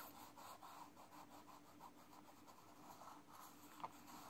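Faint rasping of a wax crayon rubbed in quick back-and-forth strokes across drawing paper, shading in a background colour, with one short click near the end.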